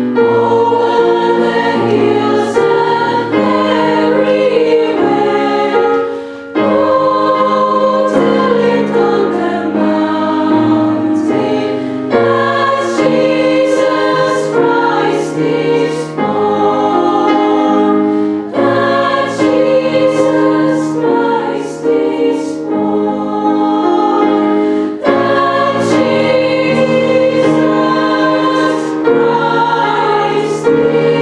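Girls' choir singing sustained chords in long phrases, with a short break between phrases about six seconds in.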